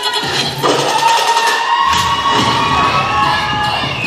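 Crowd cheering and shouting over the dance routine's music track, with sustained electronic tones; a bass line comes in about two seconds in.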